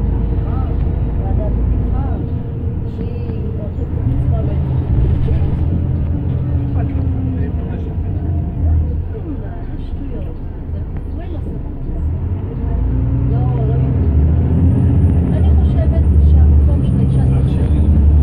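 Inside a moving bus: the engine and road noise make a steady low drone that grows louder in the last few seconds as the bus picks up speed. Passengers' voices can be heard faintly underneath.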